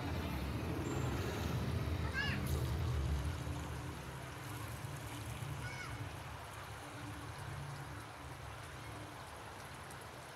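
Outdoor crowd ambience: faint distant voices, with a couple of high calls, over a low steady rumble of city noise that eases a little after about three seconds.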